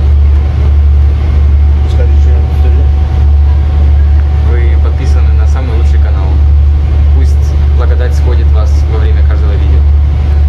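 Steady low drone of a passenger boat's engine heard from inside the cabin, with other passengers talking in the background.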